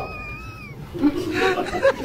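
A person's voice: a high, drawn-out call held for about half a second that falls off at the end, followed by brief talking.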